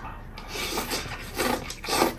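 Close-up eating sounds: rice being shovelled from a porcelain bowl into the mouth with chopsticks and chewed, in several short bursts.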